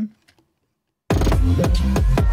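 Silence, then about a second in a hip-hop beat starts playing back loudly: kick and deep bass under melody, choir and bell samples. The melody tracks are sidechain-ducked under the kick so the mix pumps, and the drums fill what was missing from the thin-sounding melodies.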